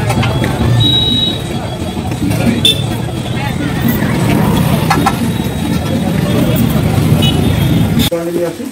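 Busy street ambience: a steady rumble of traffic with indistinct voices around, and a couple of short high-pitched tones about a second in and near the end.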